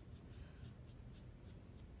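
Faint, quick scratching of a paintbrush dry-brushing paint onto a wooden block, about four brush strokes a second.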